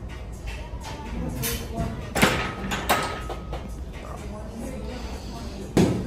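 Gym weights clanking: three loud metal knocks, two close together about two and three seconds in and one near the end, the first ringing briefly. Background music and chatter play under them.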